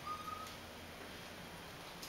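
Inside an elevator cab, a faint steady low hum, with a short, faint single-pitch beep just after the start, right after a floor button is pressed.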